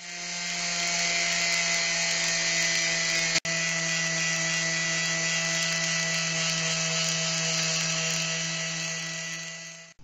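Electric palm sander running steadily as it sands the top face of a board of glued-together PVC pipe rings. The sound fades in at the start and out near the end, with a brief dropout about three and a half seconds in.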